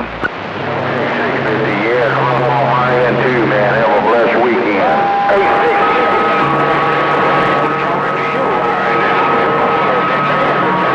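CB radio receiving distant skip stations: garbled voices through static, with warbling heterodyne tones. About halfway in, steady whistles come in and stay on.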